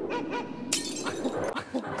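Comic glass-shattering sound effect, a sudden crash about a second in followed by scattering crackle, edited in to mark an awkward silence.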